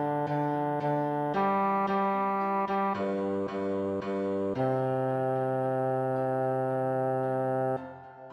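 Choral part-practice track: the cantata's choir parts played by steady synthesized wind-like tones over piano accompaniment. The choir moves in chords, then holds one long chord for about three seconds, which cuts off just before the end, leaving only soft piano.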